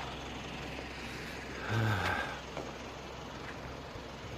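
Steady engine and road noise of a vehicle driving along a dirt road. A man's voice sounds briefly about halfway through.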